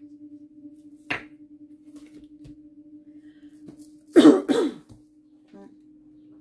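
A person coughing twice in quick succession about four seconds in, over a steady low hum, with a brief sharp sound about a second in.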